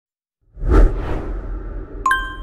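A logo-intro whoosh sound effect with a deep low rumble under it. It starts suddenly about half a second in, peaks just before the one-second mark, then slowly fades.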